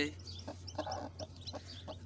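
Aseel hen clucking quietly, with short high peeps from her newly hatched chicks scattered through.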